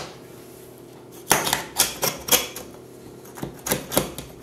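A knife cutting into the crisp, browned cheese crust of a baked stuffed pizza in its pan: a run of sharp crunching clicks, starting about a second in and coming again in a second cluster near the end.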